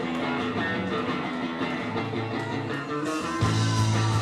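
Live ska-punk band starting a song: electric guitar leads the intro, and the full band comes in louder, with heavy bass and drums, about three and a half seconds in.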